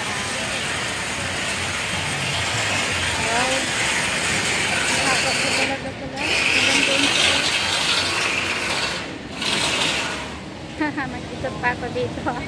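Busy street-market ambience: a steady rush of crowd and street noise with voices mixed in, broken by two brief drop-outs, about halfway through and about three quarters of the way in.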